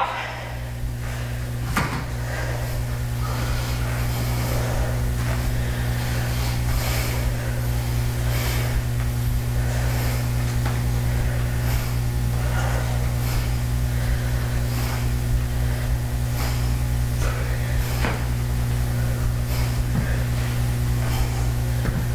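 Steady low hum of room machinery, with faint soft knocks and rustles scattered through it from people doing single-leg glute bridges on foam floor mats.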